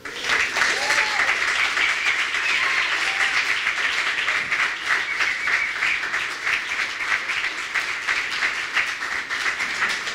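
Live audience applauding, a dense steady clatter of many hands clapping that breaks out at once and keeps going.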